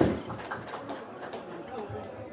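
A drum hit right at the start that dies away quickly, then a low murmur of voices talking off-mic while the music has stopped.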